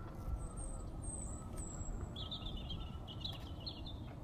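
Small birds calling: three thin, high chirps in the first half, then a quick run of lower chattering notes from about halfway to near the end, over a steady low outdoor background rumble.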